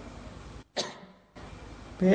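A pause in a man's recorded talk with a low steady hiss, broken by one short cough about three-quarters of a second in.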